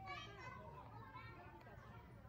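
Faint children's voices chattering and calling in the background.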